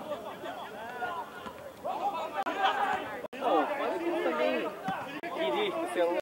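Indistinct conversation: several people's voices chatting.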